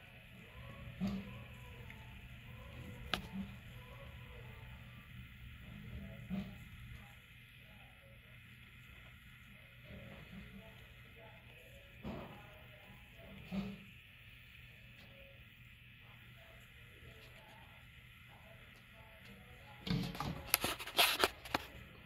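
Quiet room tone with faint background voices and a few soft knocks. Near the end comes a burst of crackly rustling and handling noise.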